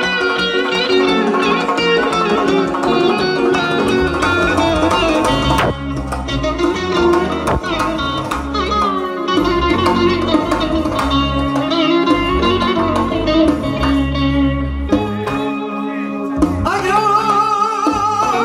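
Live Bukharian shashmaqam music from a small band, with electric guitar and keyboard playing the melody over a doira frame drum. Near the end a man starts singing with a wavering vibrato.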